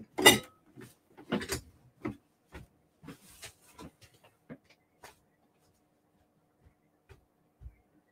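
A person getting up and walking out of a room: two loud bumps in the first second and a half, then footsteps at about two a second fading away. After that only a faint steady room hum remains.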